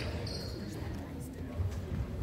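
Basketball bounced on a hardwood gym floor, a few low thumps, over the murmur of spectators' voices in the gym.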